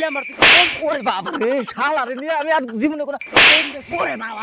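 Two loud whip-crack hit sound effects, about three seconds apart, dubbed over a mock fight. Between them run high-pitched chattering gibberish voices.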